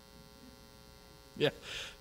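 Faint, steady electrical mains hum during a pause in speech. About one and a half seconds in, a short spoken "yeah" cuts through, followed by a fainter voice.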